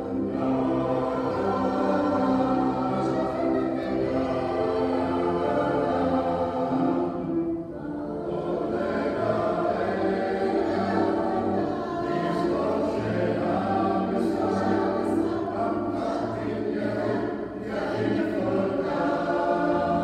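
Mixed choir of men's and women's voices singing sustained chords, with a brief break for breath about a third of the way through.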